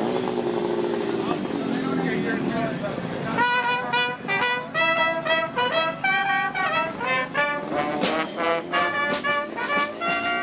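Voices talking, then about three seconds in a street brass band of trumpets, trombone, saxophones, a large bass horn and drums starts playing a tune, with drum strokes joining near the end.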